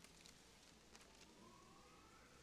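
Near silence: room tone with a low hum, a few faint clicks and a faint tone rising in pitch in the second half.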